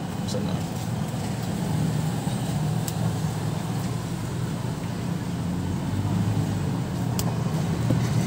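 Steady low rumble of road traffic or a running vehicle engine, with a few sharp clicks as small cutters snip at the stripped strands and shielding of a microphone cable.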